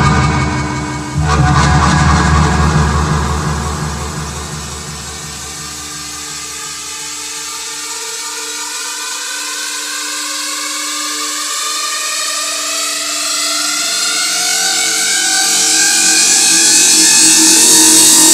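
Techno mix in a breakdown. The kick drum and bass drop out after a few seconds, leaving a held synth pad, and a rising noise sweep climbs and swells steadily, building toward the next drop.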